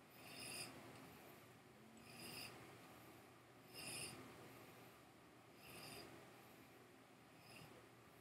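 Faint, slow breaths drawn in through the nose over a whisky glass while nosing the whisky, five soft sniffs about two seconds apart.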